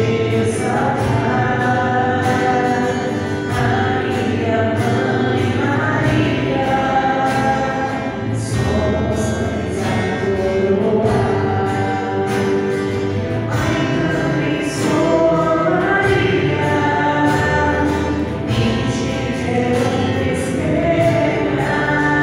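A choir singing a church hymn together, in long sustained notes without a break.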